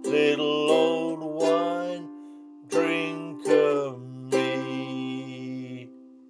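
Ukulele strummed in a few chord strokes while a man sings the closing line of the song. It ends on a chord left ringing and fading out.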